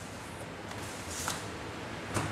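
Faint rustling of a cardboard box being handled and opened, with a short scratchy rustle about a second in, over a low steady hum.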